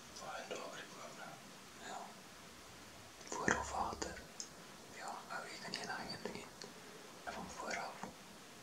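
Whispering voices: low, hushed speech coming in several short spells.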